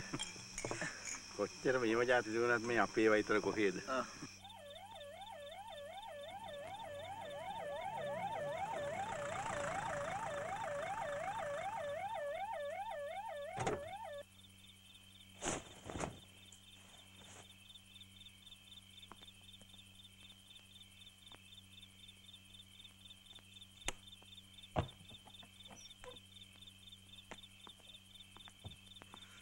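An ambulance siren warbling, its pitch swinging up and down two to three times a second; it grows louder over several seconds, then cuts off suddenly about fourteen seconds in. After it, crickets chirp steadily, with a few sharp knocks.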